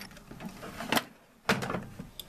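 Toolbox drawers being handled: the lower drawer is slid shut and the upper one opened, with two sharp knocks about half a second apart near the middle.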